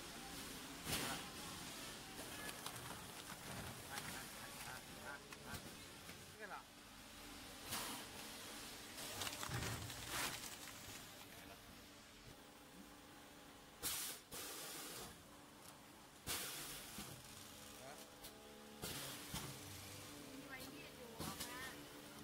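Thermoforming vacuum packaging machine running: a steady hum broken every few seconds by short hissing bursts.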